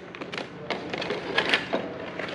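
Thin plastic sheet crinkling and rustling as it is handled and lifted off a battery pack, a string of small irregular crackles and taps.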